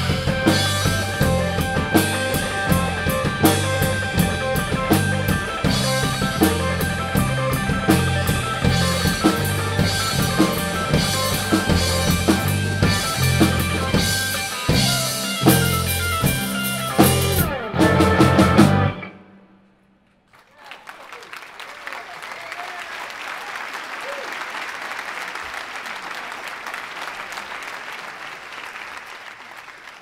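Live three-piece rock band of electric guitar, bass guitar and drum kit playing loudly to the end of a song, stopping a little past halfway through. After about a second of silence comes a steady round of audience applause.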